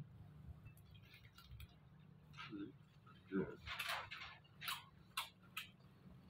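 A person eating close to the microphone: short wet chewing and lip-smacking clicks, with a brief hummed "mm" a little past the middle.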